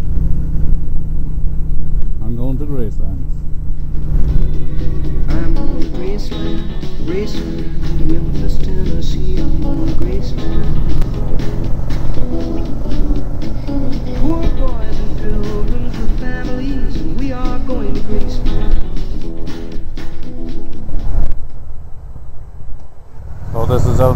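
Motorcycle engine running steadily at road speed, with music playing over it from a few seconds in until near the end. Shortly before the end the engine sound drops away for a couple of seconds.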